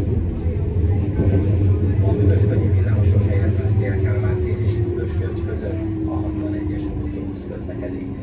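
Siemens Combino NF12B Supra tram heard from inside the passenger compartment while running, with a steady low rumble. About halfway through, a whine comes in and falls slowly in pitch as the tram slows, and the sound eases off near the end.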